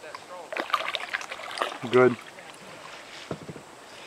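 Kayak paddle strokes splashing in river water, with a few short knocks about three seconds in. A voice says one word about two seconds in.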